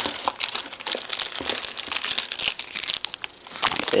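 Hands rummaging through packing material in a cardboard shipping box, with dense, irregular crinkling and crackling throughout.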